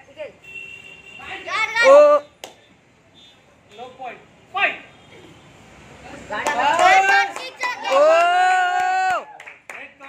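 Children shouting and yelling: a sharp loud shout about two seconds in, then a run of high yells ending in one long drawn-out shout near the end.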